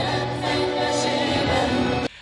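A mixed vocal group of two men and two women singing together in harmony into microphones, holding long notes.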